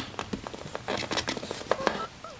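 Close handling of a plastic action figure: a quick run of small, sharp plastic clicks and light rustles as its arms are posed and the lightsaber is worked into a two-handed grip.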